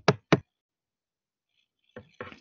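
Two quick knocks about a quarter of a second apart, right at the start.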